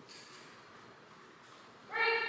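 Quiet room tone in a large hall, then near the end a loud, high-pitched call in a person's voice begins, held on a steady pitch.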